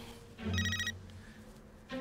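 Mobile phone ringtone: one short burst of electronic tones, about half a second long, starting about half a second in.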